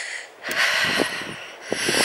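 A person breathing hard close to the microphone while walking briskly: breaths in and out that swell and fade about once a second.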